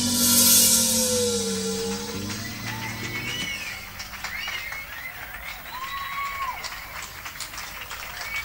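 A live rock band's closing chord ringing out after the final drum hit, fading away over about three and a half seconds, heard as a mixing-desk recording. After it there are only faint, wavering high tones.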